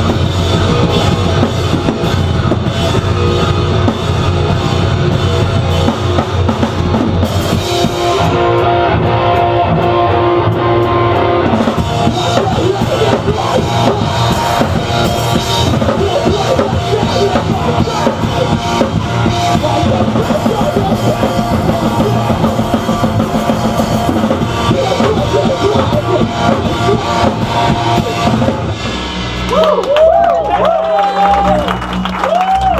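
Live heavy metal band playing loud: distorted guitars over a drum kit with bass drum and cymbals. The cymbals drop out for a few seconds around the middle while the guitars carry on.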